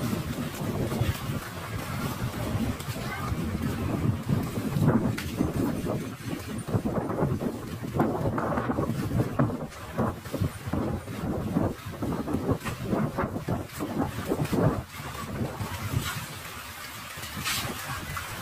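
Wind blowing on the phone's microphone, with people talking in the background.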